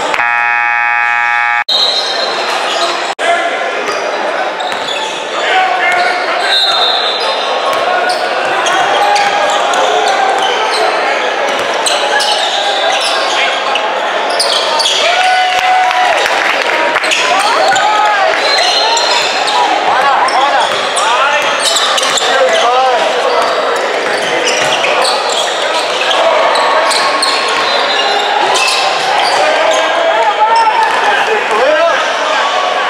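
A gymnasium scoreboard buzzer sounds for about a second and a half at the start, then cuts off. After it come basketball dribbles and bounces on a hardwood floor, sneaker squeaks and indistinct shouts from players and the bench, all echoing in a large gym.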